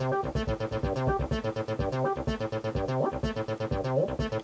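303-style monophonic bass line from an Ambika synthesizer, sequenced by a MIDIbox SEQ V4, playing a short repeating pattern of stepped notes over a quieter drum beat. The portamento is turned down, so the notes step from pitch to pitch without gliding.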